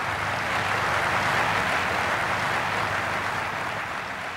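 Large hall audience applauding, a dense steady clapping that swells in and holds, beginning to die away near the end.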